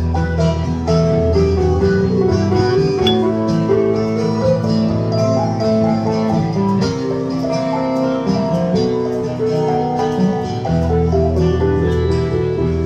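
Live trio of acoustic guitar, electric guitar and keyboard playing an instrumental break between sung verses, with no singing. The deep bass notes drop out about a second in and come back near the end.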